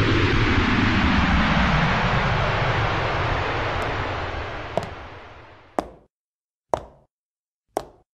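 Sound effect of a craft flying off: a loud rushing roar whose pitch falls steadily as it fades away over about six seconds. Near the end come four sharp knocks, about a second apart.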